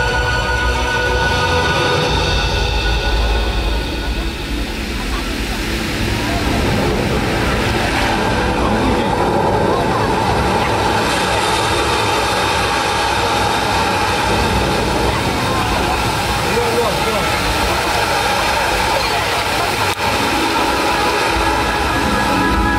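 Soundtrack of a water-fountain show played over loudspeakers: a dense passage of deep rumbling effects mixed with indistinct voices and some music.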